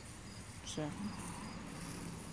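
Insects chirping faintly and steadily in a repeating high-pitched pattern, with a single short spoken word just under a second in.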